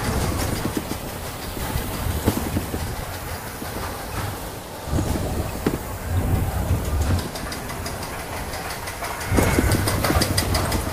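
Primeval Whirl spinning coaster car rumbling and clattering along its steel track, the rumble surging louder in waves with scattered sharp clicks and rattles.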